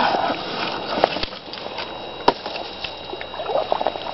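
Shallow water sloshing while dead sticks are worked into the mud at a beaver house, with a few sharp knocks of wood and a patter of small clicks near the end.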